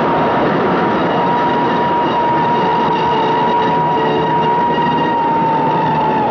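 A steam train rushing through a station at speed, its whistle sounding one long steady note over the loud rush of the carriages.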